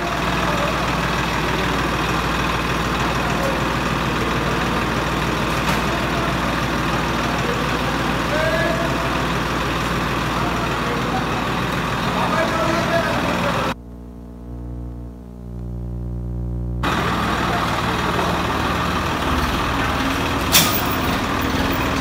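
Swaraj 969 FE tractor's diesel engine running steadily under load while pulling a tree trunk on a chain, with faint shouts from people around it. For about three seconds past the middle the sound turns muffled and quieter, leaving only a low hum.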